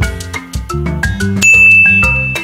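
Upbeat background music with quick, evenly struck notes, and a bright single-note ding about one and a half seconds in that rings on steadily: a quiz's correct-answer chime.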